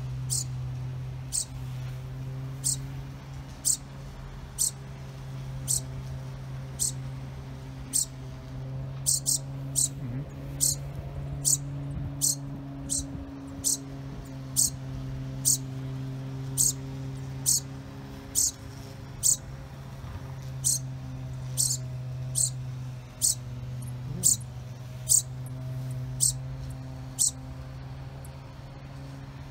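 A fledgling sparrow repeating short, high chirps, a little more than one a second at uneven spacing: begging calls to its parent. A steady low hum runs underneath.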